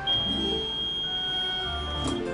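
A microwave oven's steady, high-pitched electronic beep, held for about two seconds, marking the end of its heating cycle, over background music.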